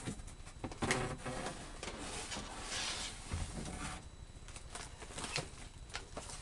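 Rustling and light knocks of packaged items being handled while someone rummages through a box of purchases.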